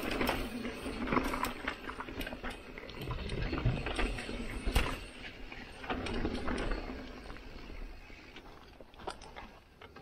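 Mountain bike rolling down a rocky dirt trail: tyre noise on the dirt and gravel with many rattling clicks and knocks from the bike over bumps, growing quieter near the end.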